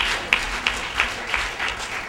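Audience applauding, the clapping thinning out and fading near the end.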